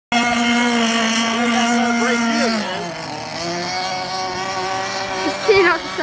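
Radio-controlled boat's motor running steadily, its pitch dropping about two and a half seconds in as it eases off.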